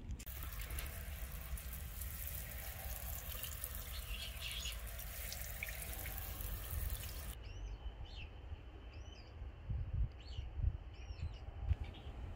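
A steady rushing hiss of water for the first half. It changes abruptly to a quieter background in which small birds chirp, about five short calls spread over the last four seconds.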